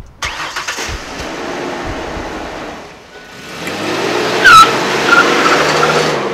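Ford Explorer SUV's engine starting and revving, easing off about three seconds in, then revving up harder as the vehicle pulls away, with a brief high squeal at the loudest point about four and a half seconds in.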